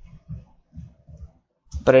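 Computer keyboard keystrokes, a quick run of about half a dozen dull, muffled taps, then a man's voice near the end.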